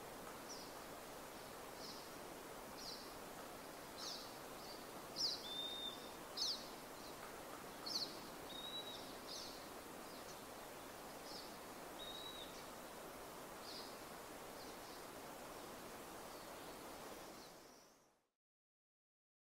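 Small birds chirping outdoors: short, high chirps about once a second, with a few brief whistled notes, over a faint steady background hiss. It fades out near the end.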